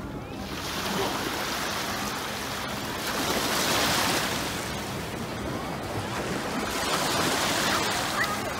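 Small waves washing up over the shallows of a sandy beach. The rush of surf swells about three seconds in and again near the end.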